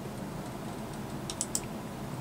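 A quick cluster of about four sharp computer mouse clicks about a second and a half in, as a web link is clicked open.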